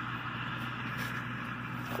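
Oliver tractor engine running steadily at work in a corn field: an even, unbroken engine drone.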